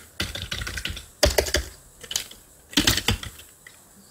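Computer keyboard typing in three short bursts of keystrokes.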